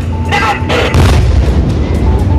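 A tank's main gun fires once about a second in: a single heavy boom followed by a rolling echo.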